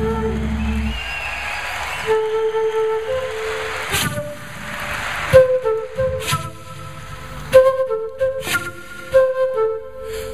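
Solo flute playing a fast melodic line with sharp, breathy attacks. A held low electric bass note stops about a second in, leaving the flute alone.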